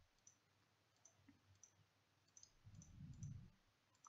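Near silence with faint, scattered clicks of a computer mouse, about seven in four seconds. A faint low sound rises briefly about three seconds in.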